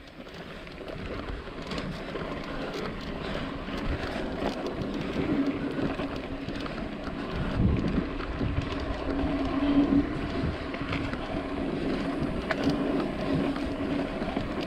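Mountain bike rolling along a dry dirt singletrack: continuous tyre and wind noise on the camera, with a low hum that comes and goes and small clicks and rattles from the bike over bumps.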